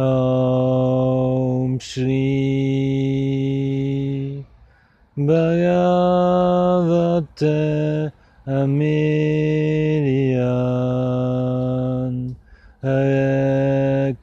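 A man's voice chanting a devotional mantra in long held notes, each drawn out for two to three seconds with short breaks for breath between them, the pitch stepping down once partway through.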